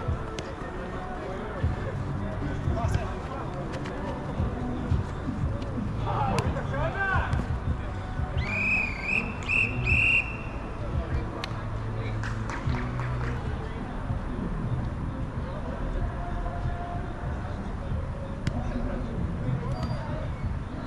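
A referee's whistle blown in three short, shrill blasts in quick succession about eight and a half seconds in. Players' shouts and occasional thuds of the ball being kicked are heard around it.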